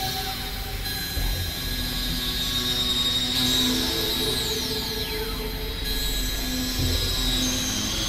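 Dense experimental mix of several music tracks playing at once: layered steady drones and sustained tones at many pitches. A long high glide falls in pitch through the middle, and the upper layers switch abruptly a few times.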